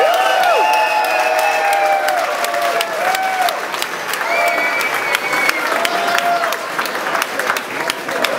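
A room full of people applauding, steady clapping throughout, with voices calling out over it, most of all in the first few seconds.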